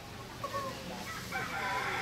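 A rooster crowing: a long pitched call that starts about a second in, rises and then holds, getting louder as it goes.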